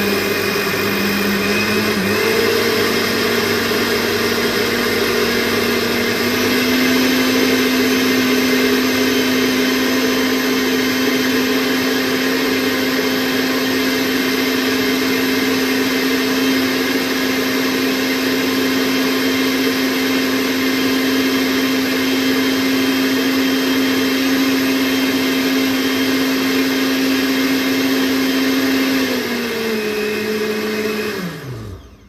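Countertop blender with a glass jug running, blending a milk-and-banana smoothie. Its motor pitch steps up twice in the first few seconds, holds steady, then drops just before the end as it starts to wind down.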